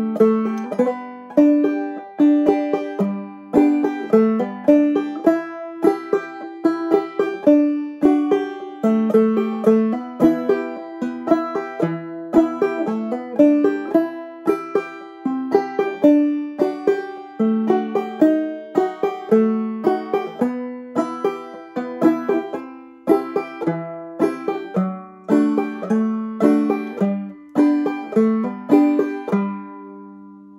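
Banjo played clawhammer style: a slow, steady run of melody notes and chords, the last notes ringing out and fading near the end.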